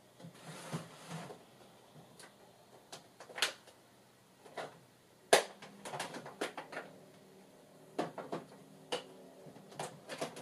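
Clicks and knocks of craft supplies being handled and searched through, with a brief rustle about half a second in and the sharpest knock about five seconds in.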